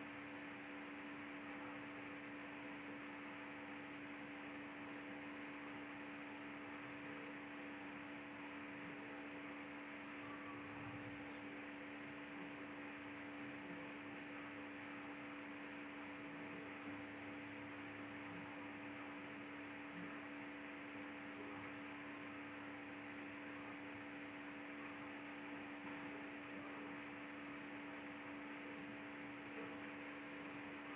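Faint steady electrical hum with constant hiss: the recording's background noise floor.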